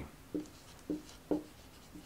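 Dry-erase marker writing on a whiteboard: three short strokes, each with a brief squeak.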